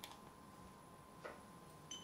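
Near silence: quiet room tone with a faint steady hum and three faint clicks, near the start, just past the middle and near the end.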